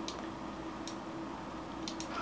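Quiet room tone with a steady low hum, broken by three faint, short clicks about a second apart.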